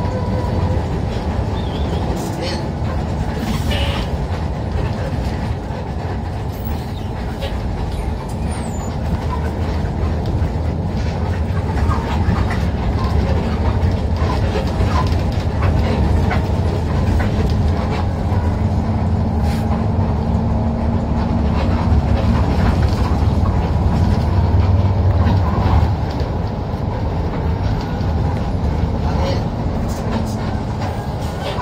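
Intercity bus engine and road noise heard from inside the cab while the bus drives along: a steady, heavy low rumble that swells for a few seconds late on and then drops suddenly.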